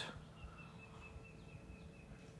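Faint background with one thin, high, slightly wavering call held for about a second and a half: a distant bird.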